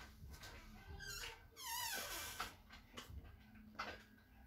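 Faint animal whining: a short rising cry about a second in, then a longer high-pitched, wavering one.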